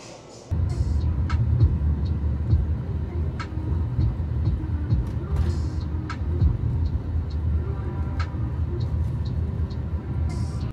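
Low, steady rumble of a moving car heard from inside the cabin, starting suddenly about half a second in.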